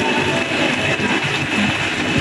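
A bitumen sprayer's motor running steadily, with a faint high whine, while hot tar is sprayed from a hand lance.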